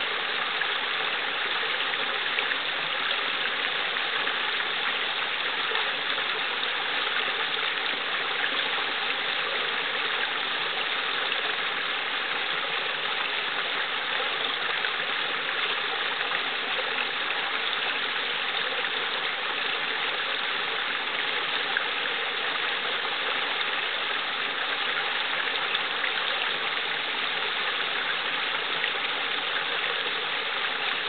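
Small brook babbling over a short rock cascade into a pool: a steady, even rush of running water.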